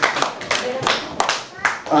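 Scattered, irregular hand clapping from the audience, with some faint talk underneath.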